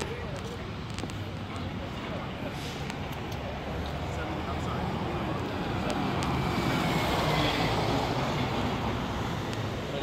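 Street traffic noise, with a vehicle passing that grows louder toward the second half and eases off near the end.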